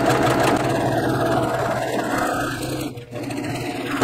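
Domestic electric sewing machine stitching a seam through two layers of quilting cotton, running steadily with a brief dip about three seconds in.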